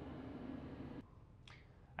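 Faint, steady low rumble of a passing boat's propeller, heard through the ship's hull from below the waterline. It cuts off suddenly about a second in, and a single brief click follows.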